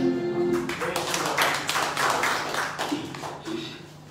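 A worship song ends on a held keyboard chord and voices, and a congregation then claps for about three seconds, the clapping dying away near the end. A faint steady hum from the sound system remains.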